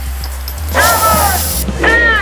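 Film trailer music with a deep, steady bass. A little under a second in, a loud burst of shouting voices breaks in for about a second, and another shout comes near the end.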